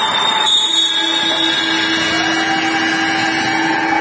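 Several long, steady horn tones at different pitches sounding together and overlapping, over crowd noise in a large sports hall.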